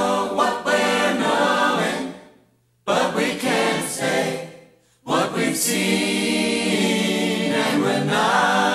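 Music with a choir singing, breaking off briefly twice: once after about two seconds and again just before five seconds.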